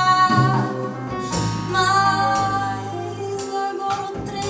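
Small jazz band performing live: a woman singing long held notes into a microphone over upright bass, with guitar, piano and drums, including a few sharp cymbal-like strokes.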